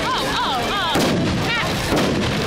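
Large bonfire burning with dense, rapid crackling and popping throughout. Warbling high-pitched whistles rise and fall over it in the first second and again about a second and a half in.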